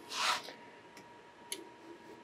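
Brief rustle of printer wiring being handled, followed about a second later by a small click.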